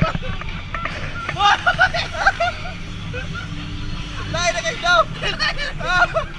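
Riders on a swinging-boat fairground ride yelling and laughing, several voices at once, with a louder burst of yells about four and a half seconds in. A steady low rumble of wind on the microphone runs underneath as the boat swings.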